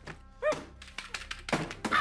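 Film soundtrack: a man's short yelp about half a second in, then a run of knocks and thumps as a computer is struck and handled, with a stronger thump near the end, over faint held music tones.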